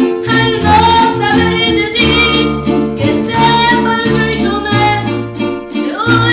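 Live acoustic Mexican folk music played in a small room: guitars strummed in a steady rhythm with deep bass notes moving underneath, and a woman singing over them.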